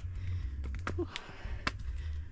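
Footsteps climbing rough stone trail steps, a few scattered taps and scuffs over a low steady rumble.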